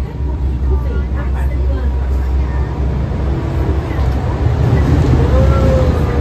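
Steady low rumble of a moving open-sided passenger vehicle, growing a little louder after about four seconds, with voices underneath.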